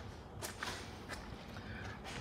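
A few soft footsteps on a hard floor, with light handling noise from a handheld camera.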